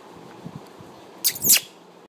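Guinea pig giving two short, high squeaks in quick succession a little past the middle.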